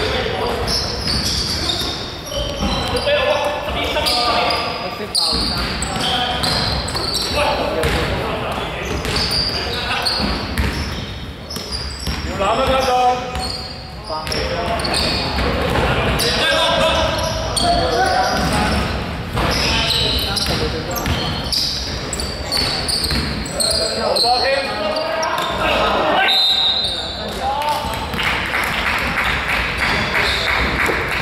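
Basketball game sounds in an echoing indoor sports hall: players' voices calling out over a basketball bouncing on the court floor.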